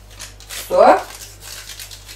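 Faint scratchy rustling of hands handling baking ingredients and packaging at a kitchen counter, with a single short spoken word about a second in.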